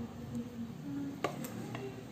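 Light clicks of a plastic rice paddle against a glazed ceramic plate as rice is served onto it, two close together just past halfway.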